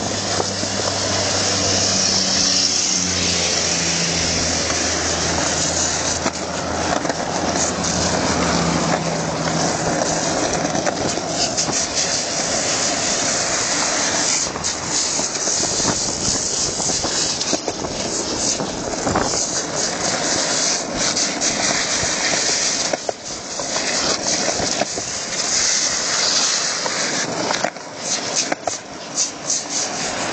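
Skateboard rolling fast downhill on asphalt: a loud, steady rush of wheel and wind noise, with a low hum in the first several seconds that steps down in pitch.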